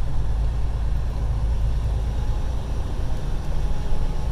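Steady low drone of a Freightliner Cascadia semi truck's diesel engine and road noise heard inside the cab, cruising slowly in eighth gear under adaptive cruise control.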